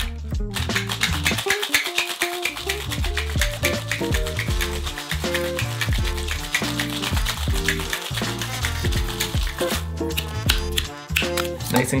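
Ice rattling hard inside a stainless steel Boston shaker as a cocktail is shaken, a fast steady rattle that stops about ten seconds in. Background music plays throughout.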